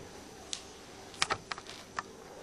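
A handful of light clicks and taps from a video camera being handled as it is reached for, one about half a second in, a quick cluster in the second half and one more at the end, over quiet room noise.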